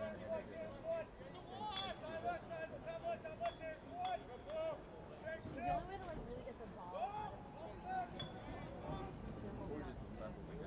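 Players and sideline voices shouting short calls across a lacrosse field, heard at a distance, with a few sharp clicks.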